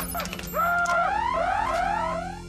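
Spaceship console alarm sound effect: an electronic tone held for about half a second, then a run of about four quick rising whoops.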